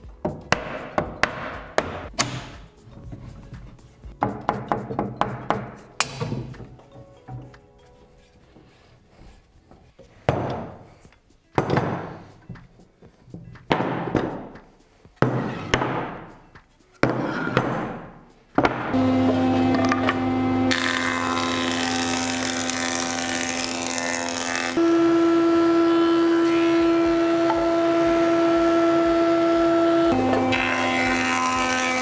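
A series of sharp knocks and heavier thuds from a wooden mallet striking wood. About two-thirds of the way in, a woodworking thickness planer starts and runs steadily, growing louder near the end as a board feeds through.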